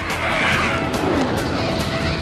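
Film trailer soundtrack: music under a loud rushing whoosh sound effect that sweeps down in pitch about half a second in.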